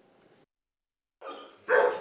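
Silence for just over a second, then dogs barking in shelter kennels, starting softly and turning loud and dense near the end.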